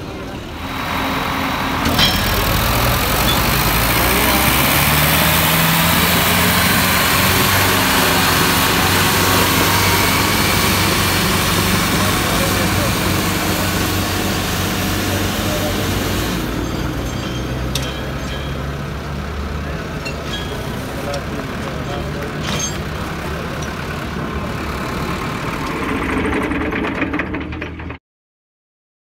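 Tractor diesel engines working hard in a tug-of-war, with the pitch rising a few seconds in. The sound becomes louder about two seconds in and eases off after about sixteen seconds, with voices over it.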